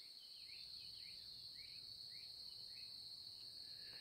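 Faint outdoor ambience: a steady high-pitched insect drone, crickets, with a small bird giving faint short chirps about twice a second.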